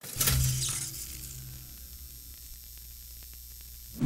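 Intro sound-effect hit: a sudden static-like noise burst that fades over about a second, leaving a low steady hum with faint scattered ticks.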